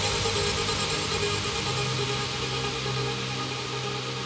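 Uplifting trance breakdown with no drums: sustained synth pad chords under a hiss of white noise that slowly fades, a low bass note entering about a second and a half in.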